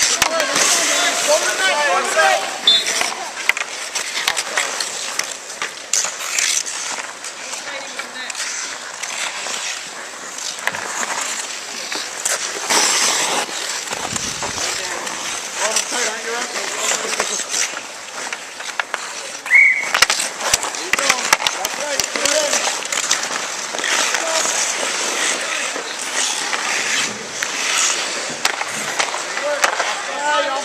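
Ice hockey skate blades scraping and carving on outdoor rink ice, a steady hiss, broken by sharp clacks of sticks and puck.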